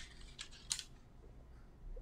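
A few faint, sharp clicks, the clearest about two-thirds of a second in, after a brief hiss.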